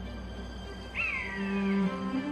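Soundtrack music with a single animal cry about a second in: a sharp rise in pitch, then a slow fall lasting under a second.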